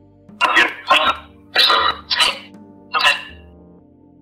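Five short, harsh, breathy bursts like a rasping whispered voice, over soft ambient background music. It is a metaphony (EVP) recording that is presented as a spirit voice saying 'Io sono suocera' ('I am the mother-in-law').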